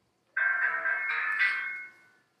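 A mobile phone ringtone playing a short melody for about a second and a half.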